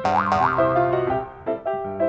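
Cartoon background music: a melody of short notes, with two quick upward pitch glides at the start.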